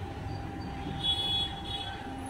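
Steady low background rumble with a faint steady hum, and a brief faint high tone about a second in.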